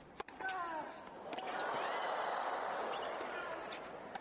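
Tennis ball struck by rackets during a rally: a sharp hit near the start and a few more near the end. In between, the crowd's noise swells and fades as the point builds.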